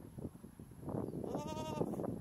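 A goat bleats once, a short wavering call about a second and a half in. Underneath are the close, irregular crunching sounds of goats tearing and chewing grass.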